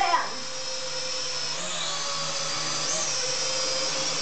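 Snaptain S5C toy quadcopter hovering, its small motors and propellers giving a steady high whine. The pitch steps up about a second and a half in and again near the end as the throttle changes.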